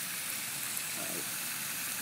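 Water spraying under pressure out of a long vertical split in the barrel casting of a Kennedy fire hydrant, with the auxiliary valve open: a steady hiss. The casting most likely split when water standing in the shut-off hydrant froze and expanded.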